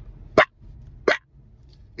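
A man's voice giving two short, clipped "bah" sounds about 0.7 s apart, imitating the fingertip flick that sends a beach ball over the net in chair volleyball.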